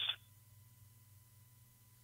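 A man's voice trailing off, then near silence: room tone with a faint steady hum.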